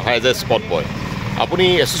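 A man talking, with a steady low hum of road traffic underneath.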